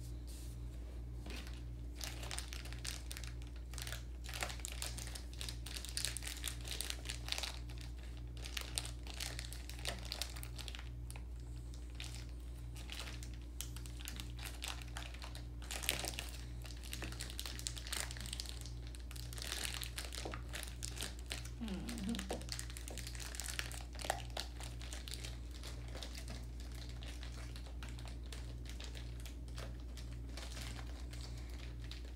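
Plastic packaging crinkling and rustling in irregular bursts as small kit parts are handled and a packet is picked at with the fingers.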